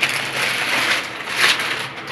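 Plastic vacuum storage bag stuffed with clothes and blankets crinkling and rustling as it is gripped and lifted, loudest about one and a half seconds in.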